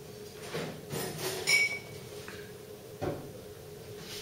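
Background clatter of crockery and glassware: a few knocks, a sharp ringing clink about a second and a half in, and a dull knock near the end, over a steady low hum.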